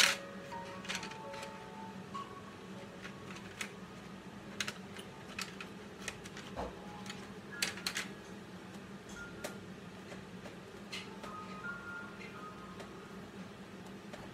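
Quiet background music with a slow melody, over scattered light clicks and taps of colored pencils. The sharpest click comes right at the start as pencils knock together in their case, followed by further irregular taps of pencil on paper and case.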